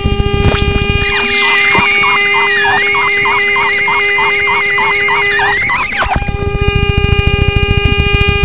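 Experimental drone music on a harmonic viola (a viola–harmonica hybrid) and a LYRA-8 synthesizer: a sustained tone over a rapid low pulsing. About a second in, the pulsing drops away and a wavering high tone with a warbling figure repeating about three or four times a second takes over, after a quick swooping sweep. Near six seconds the low pulsing returns.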